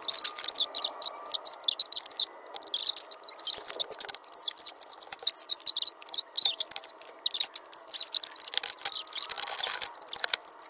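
Felt-tip marker squeaking on paper in quick, rapid back-and-forth strokes as a child scribbles color in.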